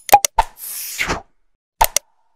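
Subscribe-button animation sound effects: a few quick clicks and pops, a short whoosh, then two more clicks near the end.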